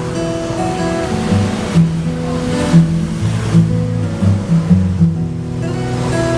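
Steel-string acoustic guitar played solo: an instrumental passage of single picked notes over low bass notes, each note ringing on.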